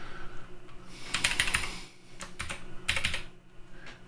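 Computer keyboard typing: three short bursts of keystrokes, starting about a second in, with brief pauses between them.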